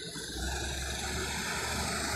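Diesel engine of an approaching Iveco Tector truck, a low rumble growing gradually louder as it comes closer.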